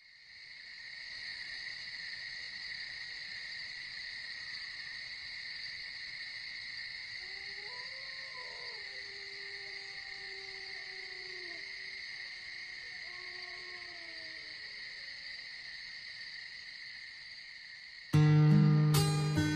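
Night ambience: crickets chirring steadily and quietly, fading in at the start. In the middle come a few long calls that rise and fall in pitch.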